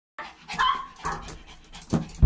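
Small dogs yipping and whining excitedly behind a glass door, three short high cries, as they greet their owner after a long absence. A brief knock on the door near the end.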